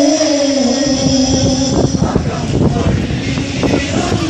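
A large group of male voices singing an Onamkali song holds one long chanted note, which breaks off just before halfway into a spell of irregular sharp claps and stamps from the dancers.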